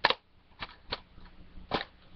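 A plastic DVD case being handled: a sharp click right at the start, then three lighter clicks and knocks spread across the next two seconds.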